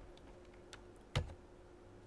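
A single sharp click of a computer key about a second in, with a couple of faint ticks before it, as the presentation advances to the next slide. A faint steady electrical hum runs underneath.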